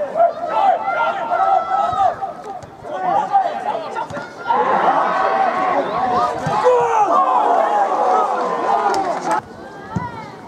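Players and spectators at a football match shouting over one another, with no words standing out. About halfway through the voices swell into a dense mass of shouting, which cuts off abruptly near the end.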